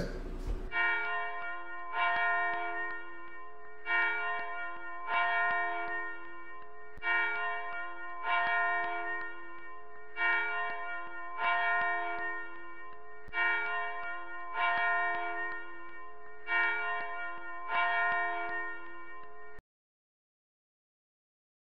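Bells ringing in slow strikes, mostly in pairs about a second apart with a pause of about two seconds between pairs. Each stroke leaves a long, many-toned ringing that overlaps the next. The ringing cuts off abruptly near the end.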